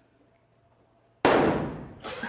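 A toilet-stall door shoved open, hitting with a loud bang a little over a second in that rings and fades away quickly.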